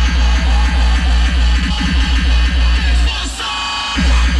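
Loud rawstyle hardstyle DJ set played over a festival sound system, heard from within the crowd: a heavy sub-bass under a fast, pounding distorted kick pattern. Near the end the bass cuts out for a short break and slams back in.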